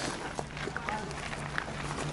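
Faint outdoor background: distant people's voices over a low steady hum, with a few light clicks.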